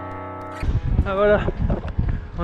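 Background music ends on a held chord that fades. About half a second in it cuts to wind buffeting the camera's microphone on an exposed coastal path, with a man's voice starting to speak.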